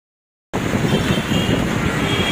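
Dead silence for about half a second, then outdoor background noise cuts in abruptly: a steady low rumble of open-air ambience, like wind on the microphone and passing road noise.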